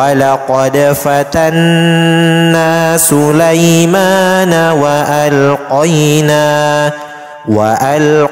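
A male reciter chanting Quran recitation in Arabic in a slow melodic style, holding long notes that glide between pitches, with a short breath pause near the end.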